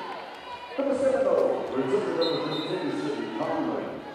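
Indistinct voices and crowd noise in an indoor volleyball arena between points, with a volleyball bounced on the hardwood court.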